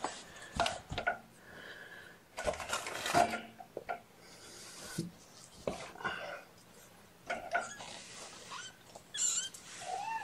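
Cloth rustling and light knocks as a young kitten is picked up and wrapped in a towel, with a few thin, high kitten mews; the clearest mew comes near the end.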